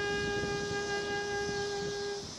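Saxophone holding one long, steady note.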